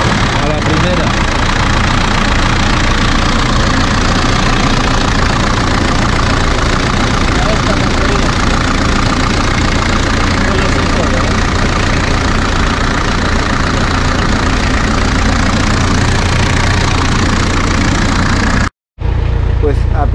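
VM four-cylinder turbodiesel engine of a classic Range Rover running steadily, just brought back to life on a borrowed battery after sitting in a scrapyard.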